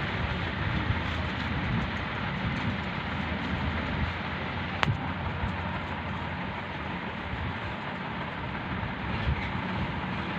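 Steady rushing background noise with the rustle of crumpled paper banknotes being unfolded and sorted by hand; one sharp click about five seconds in.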